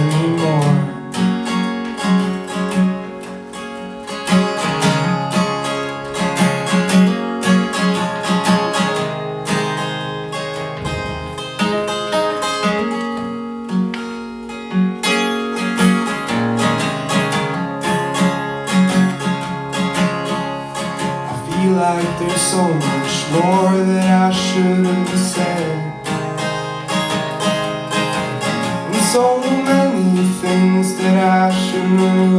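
Amplified acoustic guitar strummed and picked in the instrumental stretch between verses of a singer-songwriter's song, with a voice singing over it near the end.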